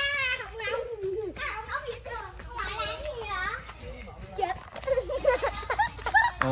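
Young children's high-pitched voices calling and chattering as they play.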